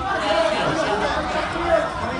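Chatter of many spectators talking at once, overlapping voices with no single clear speaker.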